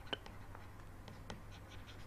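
Faint scratching of a stylus writing a word by hand on a pen tablet, with a few light ticks as the pen tip meets the surface.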